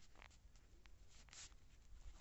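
Near silence with two faint, brief scratchy rustles, one about a quarter second in and one just past the middle, from a hand moving on the phone.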